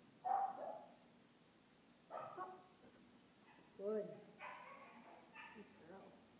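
A dog's short barks, the loudest right at the start, mixed with a woman's voice praising "good" in the second half.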